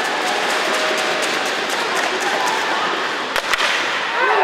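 Ice hockey play sound: skates scraping on the ice with sticks and puck clacking, and two sharp cracks close together about three and a half seconds in. Voices are heard faintly under it.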